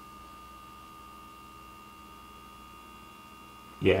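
Small cooling fan of an Eleduino Raspberry Pi case running steadily. It is barely audible: a faint, even hum with a few thin steady tones above it.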